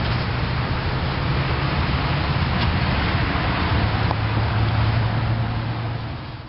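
Steady rushing background noise with a low, even hum underneath, like a running machine or ventilation.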